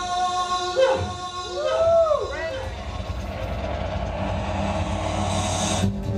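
Live electronic music: a held droning chord, then several swooping tones that rise and fall in pitch about a second in, then a hissing noise that swells and cuts off suddenly near the end.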